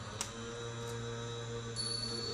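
A steady low drone with several held tones above it, with one small click a fraction of a second in and a high ringing tone entering near the end.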